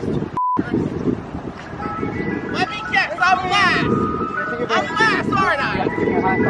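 An ice cream truck's jingle playing a tune of short steady notes, over voices. A short censor bleep, with the sound cut out around it, about half a second in.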